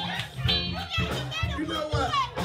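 Live band playing a groove on bass guitar and drum kit, with a man's voice singing over it through a microphone and PA.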